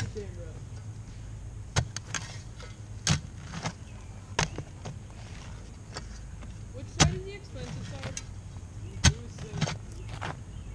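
Steel shovel blade striking and scraping into a pile of loose dirt, about seven separate strokes, the loudest a little under two seconds in, about seven seconds in and near the end.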